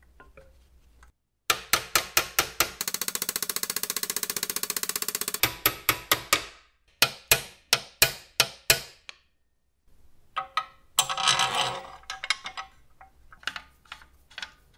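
Hand tool clicking against the metal bevel bracket of a Skilsaw 555H circular saw as a bolt is fitted. It starts as a run of sharp clicks, turns into a fast rattle of clicks, then slows to more widely spaced clicks. After a short silence there is a brief scraping rustle.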